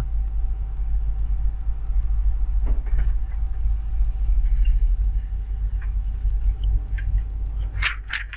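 Canon imageCLASS MF3010 laser printer running as it prints a page: a thin steady whine with a faint hiss, which stops just before the end. Under it is a constant low rumble.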